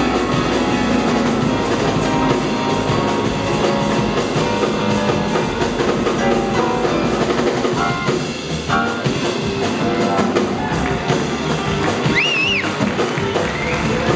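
Live jazz combo playing an instrumental passage: grand piano with double bass and a drum kit. A brief high wavering tone comes in about 12 seconds in.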